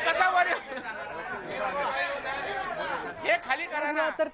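Several men's voices talking and shouting over one another at once, a chattering uproar of legislators with no single clear speaker.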